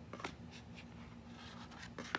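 Faint handling noise: the aluminium bottle cap remover rubbing and scraping against its cardboard box, with a light tap about a quarter second in and a scratchy rustle near the end.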